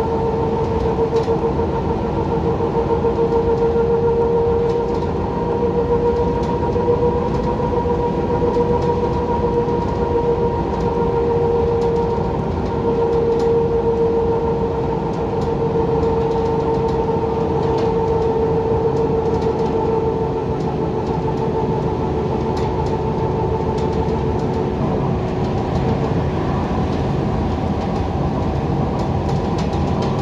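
Heuliez GX127 diesel midibus heard from on board while cruising at road speed: a steady rumble of engine and tyres with a high driveline whine that wavers slightly in pitch.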